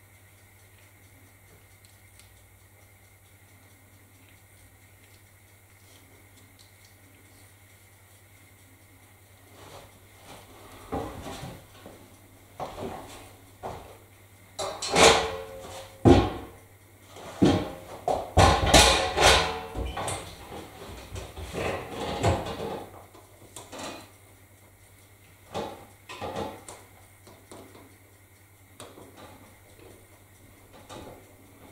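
Knocks and clattering of small objects being handled and moved, starting about a third of the way in and loudest in the middle, then a few scattered knocks near the end. A faint steady hum lies underneath.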